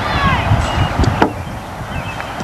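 A single sharp crack of a bat striking a baseball about a second in, over a low rumble, with distant high voices calling at the start.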